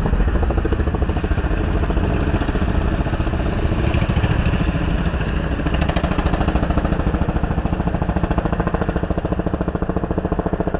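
Motorcycle engines running with a fast, steady, jackhammer-like pulsing.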